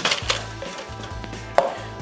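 A metal cocktail shaker tin full of ice being handled on a bar: a sharp clatter of ice and metal at the start, then a single sharp knock with a brief metallic ring about one and a half seconds in as a tin is set down.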